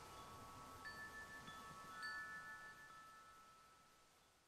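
Faint wind chimes ringing: clear tones linger and overlap, with fresh strikes about a second in and about two seconds in, then the ringing dies away.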